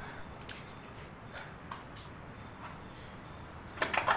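Faint rustling of clothes being snatched up, with a few soft scattered clicks, then a sharper clatter near the end as the door is reached and unlatched.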